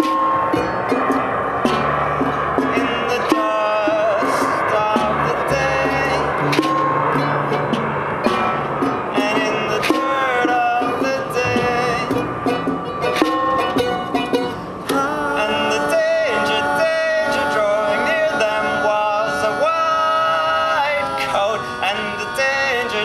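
Acoustic band playing an instrumental passage: a strummed charango over double bass notes, with taps and clicks from junk percussion.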